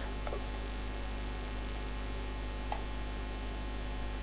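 Steady low electrical mains hum on the microphone recording, with two faint clicks, one shortly after the start and another about two-thirds of the way through.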